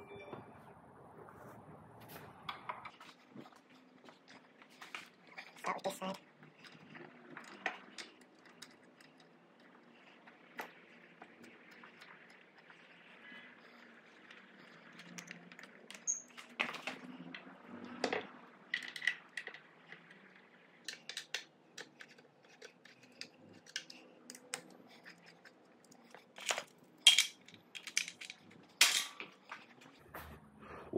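Scattered light metallic clicks, clinks and knocks of hands handling bolts, tools and wiring while installing an electric motor in a Surron e-bike frame, with a few sharper clanks near the end.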